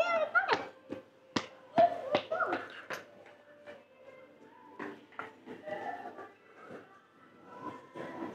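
A small dog whining briefly at the start, then a series of scattered light clicks and taps. Faint steady background hum and music run underneath.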